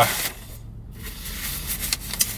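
Soft rustling of a paper takeout bag being handled.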